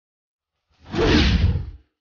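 A whoosh transition sound effect, about a second long, swelling in and fading out, marking a scene change.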